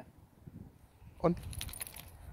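A brief, light jingle of small metal pieces about a second and a half in, just after a short spoken word, over quiet outdoor background.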